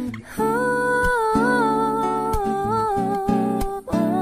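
Indonesian pop ballad: a voice holds one long, slightly wavering note over plucked acoustic guitar chords, the phrase starting after a brief dip just after the start.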